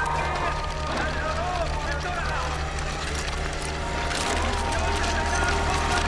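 Voices calling out in short, rising and falling phrases over a steady low hum and drone. The hum grows louder about four seconds in.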